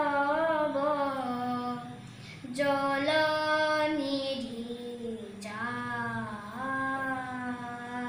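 A young boy singing a slow melody without accompaniment, holding long notes that bend and slide between pitches, with a short pause for breath about two seconds in.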